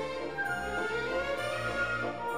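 Instrumental background music with slow, held notes.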